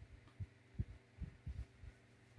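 A faint steady low hum with about five soft low thumps, roughly every half second or less.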